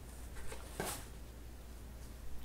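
Soft rustle and scrape of a paperback book being lifted out of a cardboard box, with a brighter brush of sound just under a second in.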